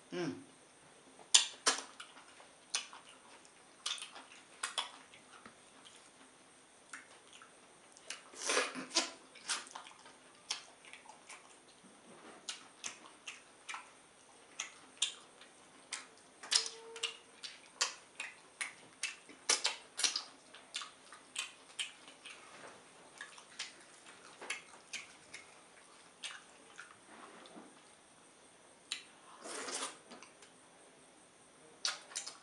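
Close-miked wet mouth sounds of eating pounded yam fufu with slimy ogbono-and-okra soup by hand: irregular sticky smacks and clicks of chewing, with a few longer, noisier sounds between them.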